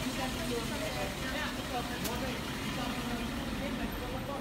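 Indistinct chatter of passing pedestrians over the steady low hum of a large bus idling.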